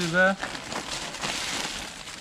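Thin plastic carrier bag rustling and crinkling for about a second and a half as groceries are pulled out of it.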